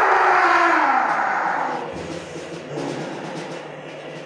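Improvised noise music: a loud, dense, harsh texture with a pitch that swells up and then sinks, easing off about two seconds in into a quieter rough rumble.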